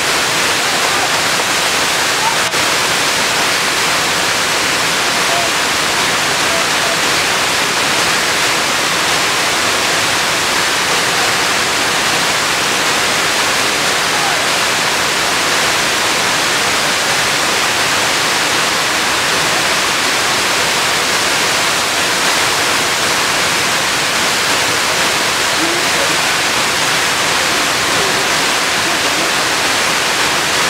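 Wide, multi-tiered waterfall pouring over stepped rock terraces: a loud, steady rush of falling water.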